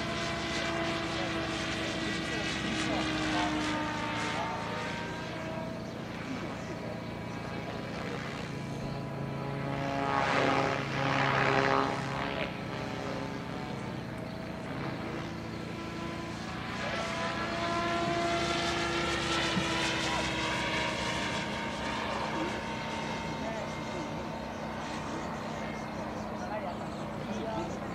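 Radio-controlled F3C aerobatic model helicopter flying, its engine and rotor pitch gliding slowly up and down through the manoeuvres. It swells louder for a couple of seconds about ten seconds in.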